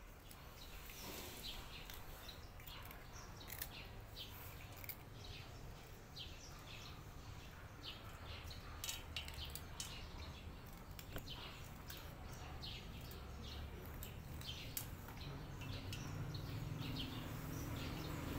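Cats chewing and eating from a plate: soft, irregular clicks and smacks, several a second. A low steady hum comes up over the last few seconds.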